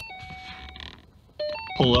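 Car's electronic chime sounding with the ignition switched on: a short pattern of three electronic tones, low, high, then middle. The held last note is heard at the start, and the whole pattern repeats about a second and a half in.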